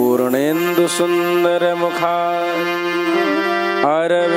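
A man chanting a Sanskrit devotional invocation in long held notes, sliding up into a new note just after the start and again near the end. A steady harmonium-like accompaniment sustains underneath.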